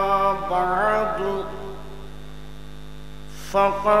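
A man's voice through a public-address system chanting a long, drawn-out Arabic phrase, the held note wavering and then gliding upward before fading out about a second and a half in. A steady electrical mains hum from the sound system then carries on alone for about two seconds until he starts speaking again near the end.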